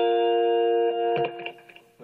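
Guitar holding a chord that rings steadily, then a couple of short picked notes about a second in, after which the sound dies away.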